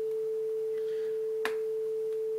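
Steady test tone at 440 Hz (concert A) from a computer signal generator, holding one unchanging pitch; this is the test signal used for a hard-clipping demonstration. A brief click comes about one and a half seconds in.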